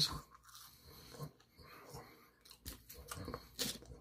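A person chewing French fries, with faint scattered crunches and mouth clicks and a louder click near the end.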